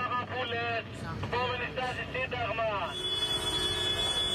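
A man calling out over the low rumble of tractors on the road. About three seconds in, this gives way to a steady, held high tone.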